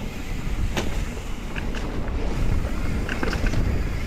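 Wind buffeting the microphone and tyre rumble from a mountain bike rolling along a dirt singletrack, with one sharp click a little under a second in and a few light ticks later.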